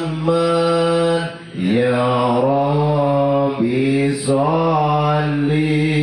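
A man singing a sholawat on the Prophet solo into a microphone, in long held notes with melismatic turns, with short breaths about one and a half and three and a half seconds in.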